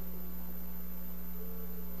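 Steady electrical mains hum, a low buzz with a stack of even overtones, holding at one level throughout.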